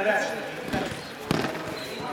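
A thud about halfway through as two young judoka hit the mat at the end of a throw.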